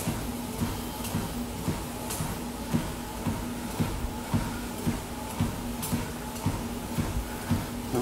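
Walking footsteps falling evenly, a little under two a second, over a steady low hum.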